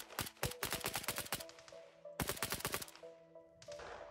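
Rapid automatic gunfire from a Kalashnikov-type assault rifle: one long burst, a pause, then a second burst about two seconds in and a few stray shots near the end, over steady background music.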